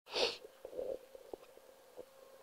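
A short, breathy burst of noise from a man at a handheld microphone right at the start, like a sharp exhale or sniff, followed by a few faint clicks of the microphone being handled.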